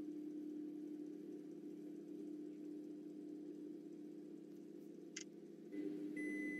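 Microwave oven running a roasting cycle: a faint, steady low hum with one short sharp click near the end.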